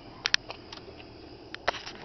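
A handful of sharp clicks and knocks from handling and movement while climbing into a minivan's driver seat: two close together about a quarter second in, and a small cluster near the end, over a faint background hum.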